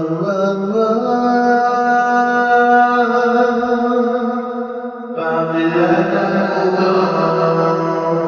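Soloed lead vocal played through the Focusrite FAST Verb reverb set fully wet, heard as washed-out singing with long held pitches smeared into a continuous reverberant wash. The sound breaks off and comes back with a new note about five seconds in.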